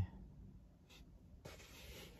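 Faint handling noise in a quiet room: a light click about a second in, then soft rubbing from about a second and a half.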